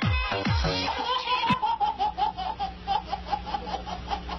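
Electronic dance music with falling bass sweeps for about the first second, then a baby laughing in a long run of short repeated bursts, about three or four a second.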